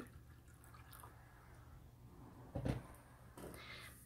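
Faint sloshing and dripping of water in a glass baking dish, with one short, louder slosh a little over halfway through.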